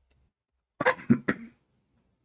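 A man coughing, a short run of two or three coughs about a second in.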